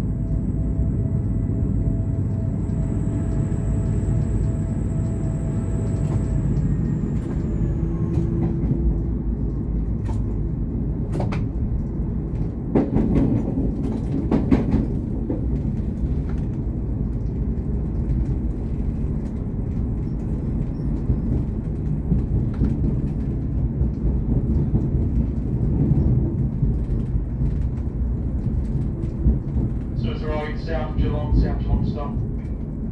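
V/Line VLocity diesel railcar running along the line, heard from the driver's cab: a steady rumble of engine and wheels on rail. A thin high whine fades out about eight seconds in, and a few sharp clicks come between about ten and fifteen seconds in.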